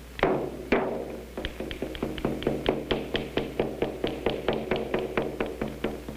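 Percussion music on the soundtrack, likely a drum: a few separate strikes, then a fast, even beat of about five strikes a second.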